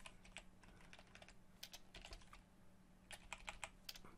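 Faint typing on a computer keyboard: scattered keystrokes, with a quick run about a second and a half in and another near the end.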